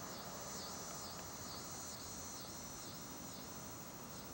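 Faint chorus of insects in roadside grass: a high-pitched buzz that pulses about twice a second.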